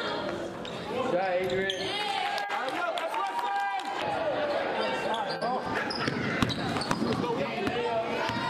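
Live basketball game sound: a basketball bouncing on a hardwood gym floor, with players and spectators shouting.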